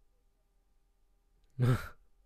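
A man's single short breathy laugh, a voiced "uh" that trails off into an exhale, about one and a half seconds in after near silence.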